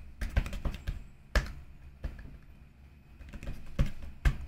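Typing on a computer keyboard: a quick run of keystrokes, one louder key tap about a second and a half in, a pause with only faint taps, then another sharp keystroke near the end.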